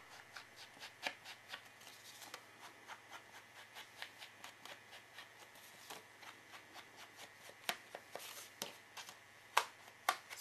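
Hands handling and rubbing scrapbook paper: faint rustling with a run of soft taps and clicks, a few each second, and a couple of sharper clicks near the end.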